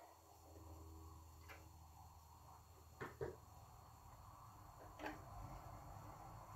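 Near silence: faint room hum with a few light taps, two close together about three seconds in and one near five seconds, from a palette knife mixing oil paint on the palette.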